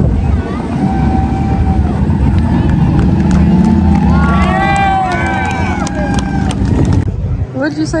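A crowd shouting and cheering over the running engine of a Chevrolet C10 pickup at a burnout pad. About seven seconds in it cuts off abruptly to a man speaking.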